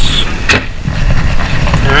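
A single sharp knock from the white cabinet drawer being handled, about half a second in, over a steady low rumble.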